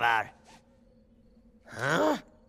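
A man's voice from an animated film soundtrack: a short vocal sound that cuts off just after the start, then a brief sigh-like breath near the end that rises and falls in pitch.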